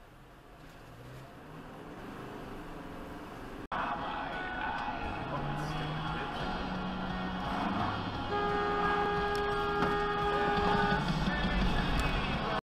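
A car horn sounds in one long, steady honk of nearly three seconds in the second half, over dashcam road and engine noise.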